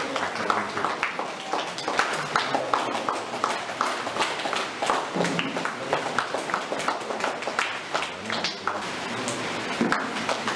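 A small group clapping by hand: uneven, scattered claps.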